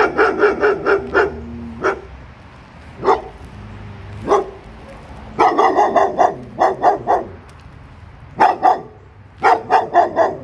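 Young German Shepherd barking repeatedly in quick bursts of several sharp barks, with single barks in between. It is the reactive barking at people that she is in training for.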